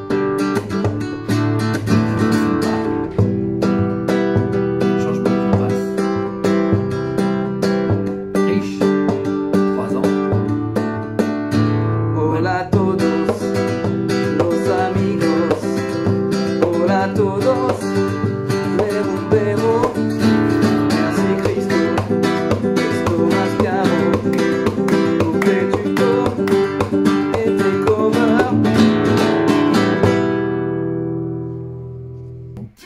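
Nylon-string guitar playing a rumba strum over a repeating chord loop, with a man's voice singing over it from about twelve seconds in.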